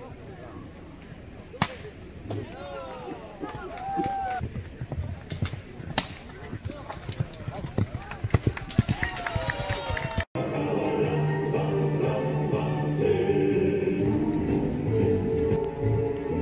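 A horse galloping on grass during a cavalry sabre drill, with a few sharp knocks, quick hoof and tack clicks as it passes close, and onlookers' voices. About ten seconds in, the sound cuts to background music.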